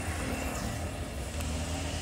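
Steady low engine hum.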